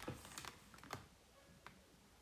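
A handful of faint, irregular clicks and taps, bunched in the first second with one more near the end, like light typing or tapping on a device.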